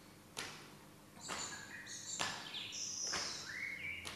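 Faint bird chirps: short high notes and a few rising glides, starting about a second in. Under them are three soft swishes, about a second apart.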